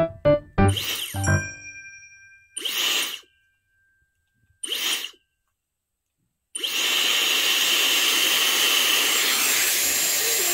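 A short tinkling musical jingle ends about a second and a half in. Then a Dyson hair dryer is switched on for two brief blasts of rushing air, and about two-thirds of the way through it comes on and keeps running with a steady, even whoosh.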